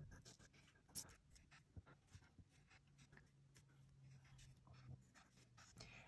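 Faint pen strokes and taps on paper while a graph is drawn with a ruler, with one sharper tap about a second in.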